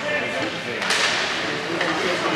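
Hockey sticks clacking on the puck at a faceoff, about a second in, followed by a moment of skate blades scraping the ice, under the voices of people in the rink.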